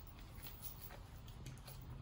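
Quiet low hum with a few faint clicks and rustles from the horse's bridle and reins as the pelham reins are gathered up.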